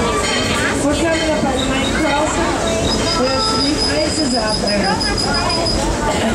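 A narrow-gauge passenger train rolling along with a steady low rumble. About halfway through, a high, steady squeal from the wheels on the curving track starts and holds for roughly three seconds.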